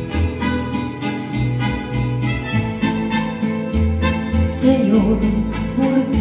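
Electronic keyboard playing the instrumental introduction of a ballad: a steady pulse of short notes, about four a second, over bass notes and held chords.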